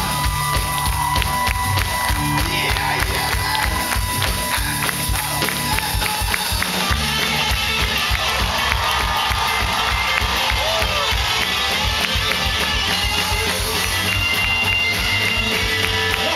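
Live rock band playing through a PA: two electric guitars and a drum kit at a steady, driving beat.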